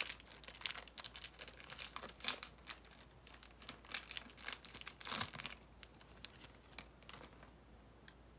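Plastic wrapper of a trading-card fat pack being torn open and crinkled, in irregular crackling bursts that die away near the end.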